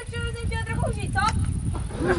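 A child's voice draws out one long sound at a level pitch for about a second, then gives a short call that slides upward. Under it runs a low rumble of wind on the microphone.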